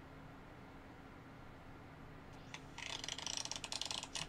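A deck of playing cards being riffled: a rapid run of light, crisp clicks that starts a little past halfway, heard through an iPhone's small speaker. Before it there is only faint room tone.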